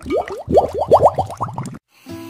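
Logo-animation sound effect: a rapid string of short rising bloop tones, several a second, that stops suddenly near the end.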